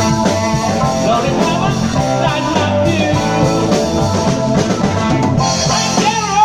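Live rock band (electric guitar, bass guitar, drum kit and keyboard) playing a loud rock and roll number, recorded on a smartphone in the room.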